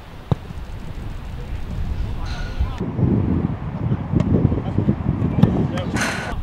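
A football kicked hard from a free kick: one sharp thump about a third of a second in, with wind on the microphone. From about halfway, shouting voices.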